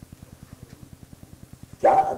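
A pause in a man's lecture filled by a steady low pulsing buzz, about twelve beats a second, in the background of an old recording; his voice comes back in near the end.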